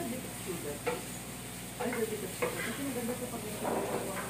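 Shrimp and broccoli sizzling in a frying pan as a spatula stirs them, with a steady hiss and a few sharp scrapes and knocks of the spatula against the pan.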